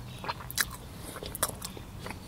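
A man chewing a mouthful of leftover cauliflower-crust pizza close to a clip-on microphone: a run of short, sharp mouth clicks and crunches, the two loudest about half a second and a second and a half in.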